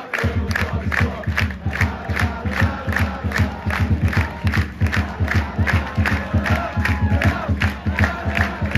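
Football crowd in the stand clapping together in a fast, steady rhythm, hands close to the microphone, with voices chanting and cheering among the claps.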